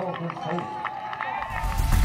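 Voices calling out and shouting on a football field, one of them held for about a second. About one and a half seconds in, a deep booming swell comes in and leads into electronic outro music.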